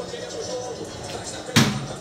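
Football match broadcast playing from a TV, with faint commentary and crowd sound, cut by a single sharp thump near the end.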